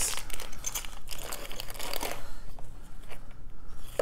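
A small plastic bag crinkling and rustling as it is handled and opened by hand, busiest in the first two seconds, then a few lighter clicks and rustles.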